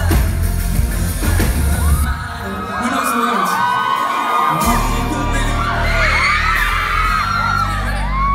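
Live pop-rock band playing loud with drums and guitar. About two seconds in the band drops out and the audience screams, many high voices rising and falling at once. A couple of seconds later the bass and drums come back in under the continuing screams.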